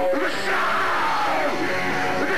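Live rock band playing: electric guitars and drum kit, with a singer's voice coming in over them at the start.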